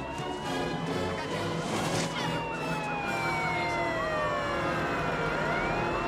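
Several emergency-vehicle sirens wailing at once, their pitches slowly rising and falling and crossing one another.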